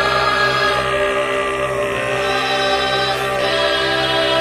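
Choral music: voices holding long, steady notes over a low drone.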